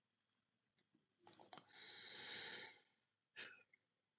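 Faint breath at the microphone, a soft exhale or inhale of under a second, with small mouth clicks just before it and one more near the end.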